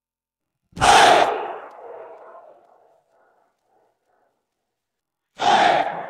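Isolated shout stem of a pop song: two short shouted vocal calls, one about a second in and one near the end, each trailing off in a reverb tail over silence.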